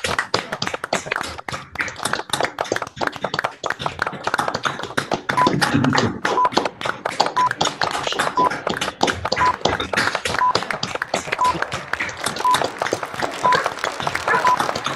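A group applauding over a video call: many overlapping quick claps. From about five seconds in, a short high countdown beep sounds once a second.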